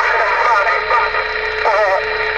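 DX 33HML radio receiving over its speaker: a steady hiss of static with garbled, warbling voice fragments in it. A low steady whistle runs under it and drops out near the end.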